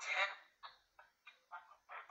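Spirit box app on a tablet playing through its small speaker: a rapid run of short, choppy voice-like fragments, about three a second, the loudest right at the start, thin and without bass. The user takes it for a spirit voice saying "you have to help us put it together."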